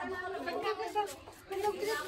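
Several people's voices chattering indistinctly, with no clear words, pausing briefly past the middle.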